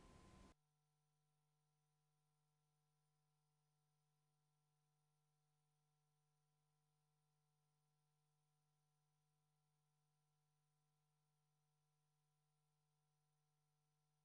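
Near silence: the sound track is essentially empty after the narration ends.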